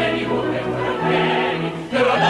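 Operetta chorus singing together over a theatre orchestra, holding long notes, with a brief dip just before the end.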